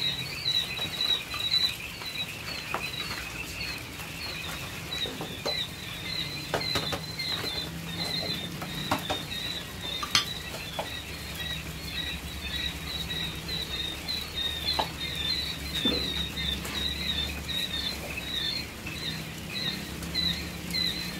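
Many day-old quail chicks peeping in a continuous, dense chorus of short high chirps. Scattered light clicks and rattles come from feed being scooped into a plastic feeding tray.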